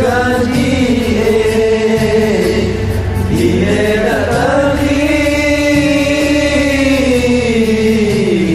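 Acehnese song with long, held sung notes over a steady low accompaniment. The melody dips a little past the middle, climbs back and holds, then falls again near the end.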